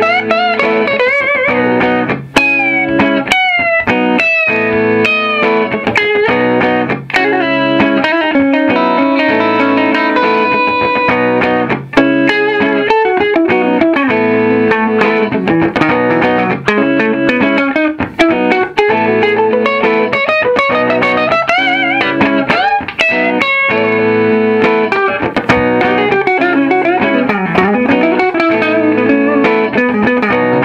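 1959 Gibson Byrdland thinline archtop electric guitar with PAF humbucker pickups, played through a Vox AC30 amplifier over a looper: a recorded rhythm part keeps sounding underneath while lead lines with string bends are played on top.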